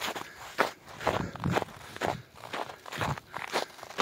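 Footsteps on a snow-covered woodland trail, about two steps a second, each step a short crunch.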